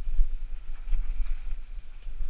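Low wind buffeting on an action camera's microphone while a mountain bike rolls along a forest trail, with faint clicks and rattles from the bike and tyres.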